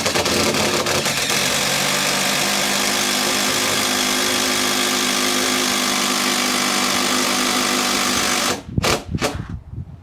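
Power drill running steadily under load for about eight seconds, driving a Tapcon concrete screw through the TV wall mount into the stone, then a few short trigger blips before it stops.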